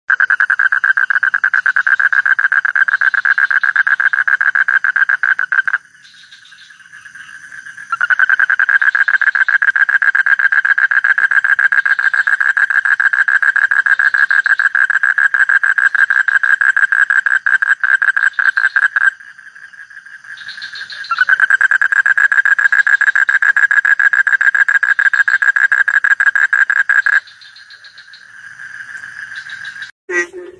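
Asian common toad giving its advertisement call: three long, loud, rapid pulsed trills, the first about six seconds, the second about eleven, the third about six, with short quieter pauses between them.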